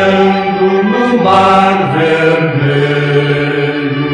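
Music: a choir singing a gospel hymn, holding long notes that change pitch about a second in and again near the end.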